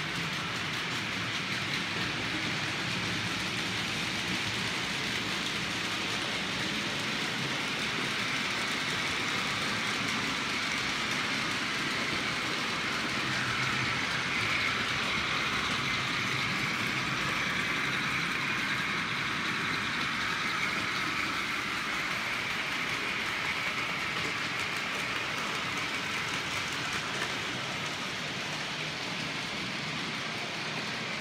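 Several OO gauge model trains running at once: a steady whirr of small electric motors and wheels rolling on the rails, swelling slightly in the middle.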